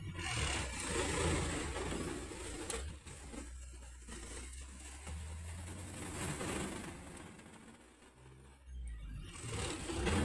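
Truck engine running under way, heard from inside the cab, with road and mechanical noise; the sound eases off briefly about eight seconds in and picks up again, as during a manual gear change.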